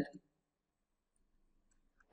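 Near silence in a pause of speech: a man's voice trails off at the very start, then only faint room tone.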